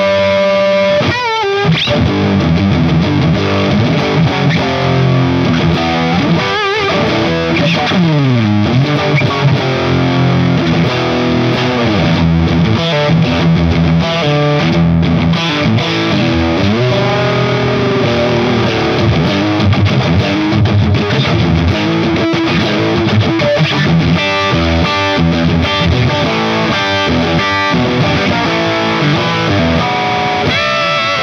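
Electric guitar, a Telecaster, played through a digital model of an Orange OR50 amp with a driven, distorted rock tone: continuous riffs and chords, with falling slides about seven to nine seconds in.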